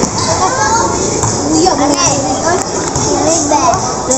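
Spectators' voices: many people talking and calling out at once, including children's voices, with a constant crowd hubbub underneath.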